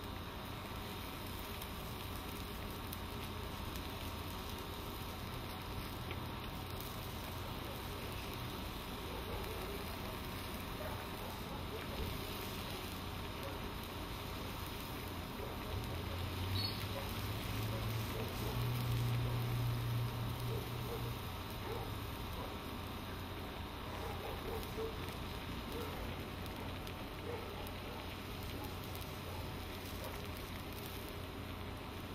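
Stir-fry simmering and sizzling in a wok of sauce, a steady crackling hiss with bubbling. A low hum swells up for a few seconds about halfway through, then fades.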